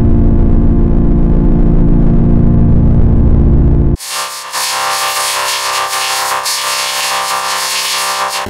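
Heavily effect-processed audio clip: loud, deep and muffled, with nothing but a low steady hum of pitched tones, then switching abruptly about four seconds in to a harsh, bright, buzzing distorted version.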